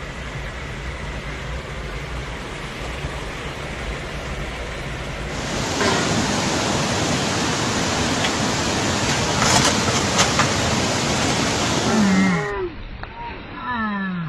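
Steady rushing noise of fast-flowing floodwater, growing much louder about five and a half seconds in and cutting off suddenly near the end.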